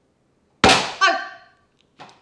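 A clang: two sharp knocks about half a second apart, the second ringing briefly and dying away.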